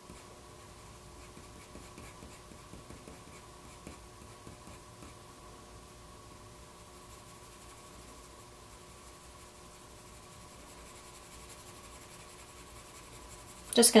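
Soft 4B graphite pencil drawn across paper in short shading strokes, a faint scratching, with the strokes clearest in the first five seconds. A faint steady hum runs underneath.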